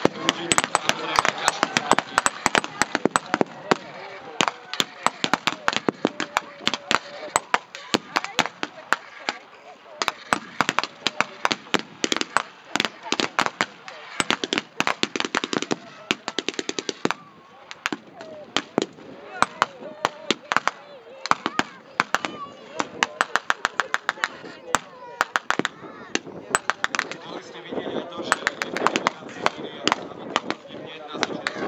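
Blank-fire gunfire from a First World War battle reenactment: scattered rifle shots mixed with rapid strings of shots, going on continuously with short lulls.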